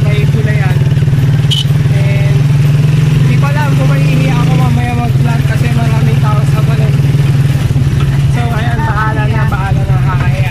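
Motorcycle engine of a Filipino tricycle running steadily, heard from inside its sidecar as a loud low hum that dips about halfway through.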